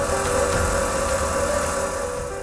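A small CNC vertical milling machine running, its spindle turning an end mill that cuts into a block held in a vise: a steady, even machining noise with a high hiss.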